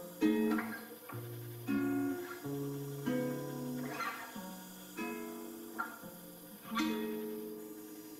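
Guitar music with no singing: a slow run of strummed chords, about one a second, each left ringing. The last chord comes near the end and fades away.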